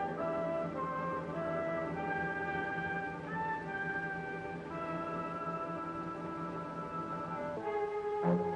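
Orchestral background music with brass: a melody of held notes moving step by step over a steady low note, shifting to a new chord near the end.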